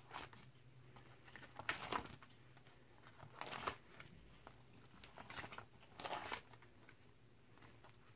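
Plastic nine-pocket card sleeve pages in a binder being turned by hand: four faint, short crinkling rustles.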